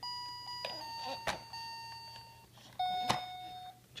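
Yellow electronic toy bus sounding three held beeping tones, each about a second long and at a different pitch, as its buttons are pressed. Two sharp knocks land between them, about a second and about three seconds in.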